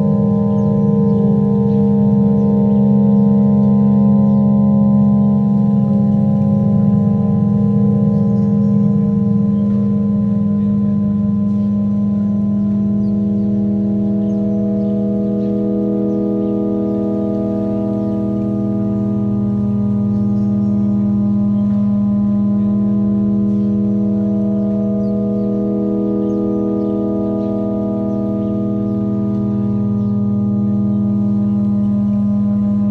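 Ambient music: layered drone tones, the strongest a low one, held steadily, with new layers entering about five and twelve seconds in and slowly swelling and fading.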